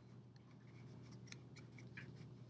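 Faint crisp rustles and ticks of construction paper as hands press and smooth a paper crown onto a glued cutout, over a steady low hum.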